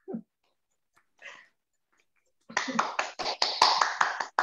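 Several people clapping over a video call, starting about two and a half seconds in as a dense, irregular patter of claps.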